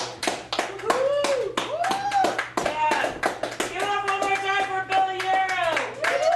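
Audience applauding after a poetry reading, with several voices whooping and calling out over the clapping, one of them holding a long call in the second half.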